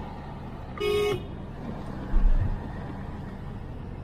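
Steady road and engine noise heard from inside a moving car's cabin, with one short car horn toot about a second in and a low thump a little after two seconds.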